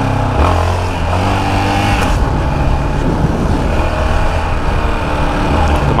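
Yamaha XT660's single-cylinder four-stroke engine running as the bike rides along. Its pitch rises over the first two seconds as it pulls, then holds steady.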